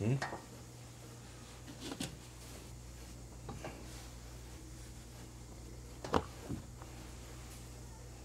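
Hands smoothing and pressing a suit jacket's fabric flat on a cutting table: a few brief soft rubs and taps over a steady low hum.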